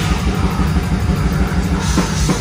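Live heavy metal band playing loud, distorted guitars and bass in a dense low wall of sound.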